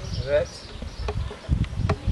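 An insect buzzing close by, with a few light clicks near the end.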